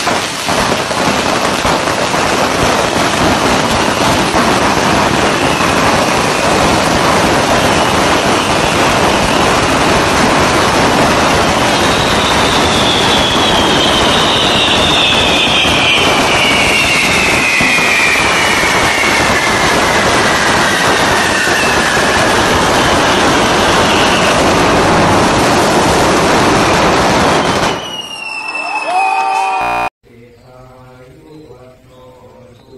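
Dense, steady crackling and hissing of many fireworks going off together. A long whistle falls slowly in pitch midway through, and the noise stops abruptly near the end.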